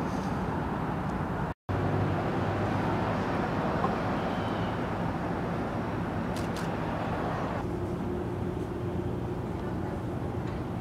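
Steady outdoor city traffic noise, a continuous low rumble of passing vehicles. It drops out completely for a moment about one and a half seconds in, and its tone shifts slightly at about eight seconds in.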